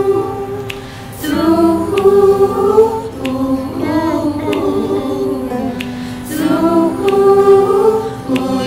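A virtual choir of many young men and women singing held chords in close harmony, the chords shifting every second or so. A soft regular beat runs underneath, about one tick a second.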